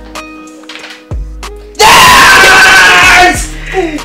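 Background music with steady held tones, a short thump about a second in, then a very loud scream about two seconds in, lasting about a second and a half.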